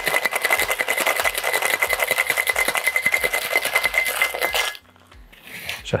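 Ice rattling hard inside a tin-on-tin Boston cocktail shaker, shaken fast and evenly, stopping abruptly about five seconds in. This is the wet shake with ice after an egg-white dry shake, chilling the drink.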